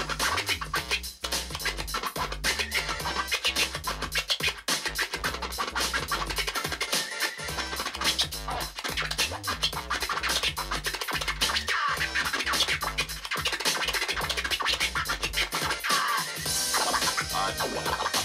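Turntable scratching over a looping beat: records pushed back and forth by hand, giving rapid chopped cuts and rising and falling sweeps, driven through Serato Scratch Live.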